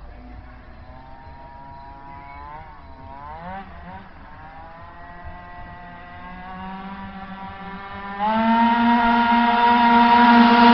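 Tuned two-stroke scooter engine at high revs coming up the street: a high whine climbing steadily in pitch, dipping and recovering a couple of times around three seconds in, then growing much louder about eight seconds in as the scooter closes in.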